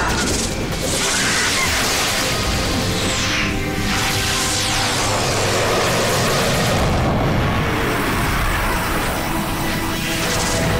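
Cartoon action soundtrack: background music with booming sound effects as the remote-piloted Skidbladnir flies off, including a falling whoosh about three seconds in.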